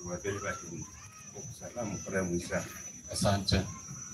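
Voices of a gathered crowd, loudest a little after three seconds in, over a steady high-pitched whine.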